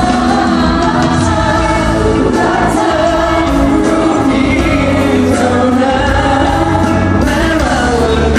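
Live amplified pop music: a medley of Thai pop songs sung by several singers with a band and drums, heard over the PA in a large hall from the audience.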